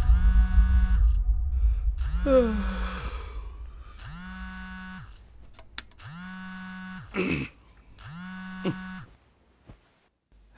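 Mobile phone buzzing on a wooden bedside table with an incoming call: five even buzzes, each about a second long, every two seconds, stopping near the end as it is picked up.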